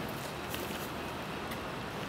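Steady outdoor background noise, an even hiss and low rumble with no clear event in it.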